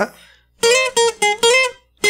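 Twelve-string acoustic guitar picked: four quick plucked two-note figures on the top two strings, high on the neck around the ninth to eleventh frets, the opening lead (requinto) phrase.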